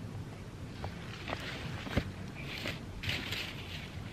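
Rustling and light crackling of a heap of pulled-up bean vines and leaves being handled, in soft irregular bursts with a few faint clicks.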